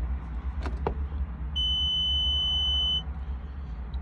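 Key-on warning buzzer in a 2019 Cat skid steer's cab, giving one steady high beep of about a second and a half as the ignition is switched on, before the engine is started. Two light clicks come just before it.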